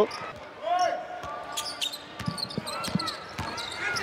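A basketball bouncing a few irregular times on a hardwood court during live play, with short high squeaks of players' sneakers in between.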